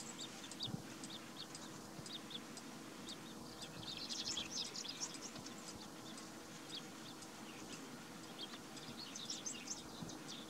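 Small birds chirping in the background: many short, high chirps, busiest about four seconds in and again near the end, over a faint steady hum.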